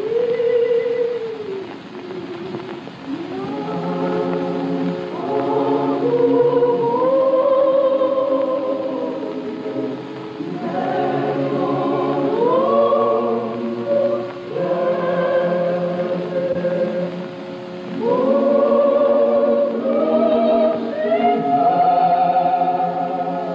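Church congregation singing a slow hymn in unison with a pipe organ, in long phrases of held, wavering notes with brief breaks between phrases.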